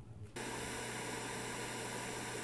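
Television static hiss that cuts in suddenly a fraction of a second in, then runs steady with a low hum beneath it.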